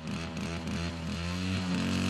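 A motorcycle engine running in a quiet break of a beat-era pop song, its pitch sliding down and then holding steady, with the band faint beneath it before the full band comes back in.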